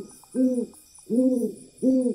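Owl hooting sound effect: a series of short, evenly spaced hoots, three in quick succession, each rising and falling in pitch, over a faint high shimmering tone.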